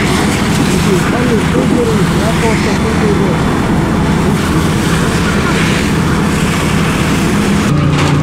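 Fire engine pump running steadily with a continuous hiss of fire hoses spraying water, and people talking in the background.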